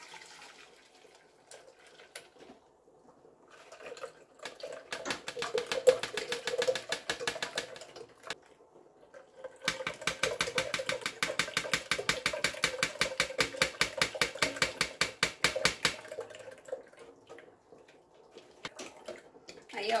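Blended mango juice strained through a fine mesh sieve into a metal jug: quiet pouring at first. Then come two stretches of fast, even scraping and clicking as the pulp is worked against the mesh, one short and one longer.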